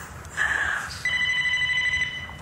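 Telephone ringing: a steady, high electronic ring starts about a second in and carries on.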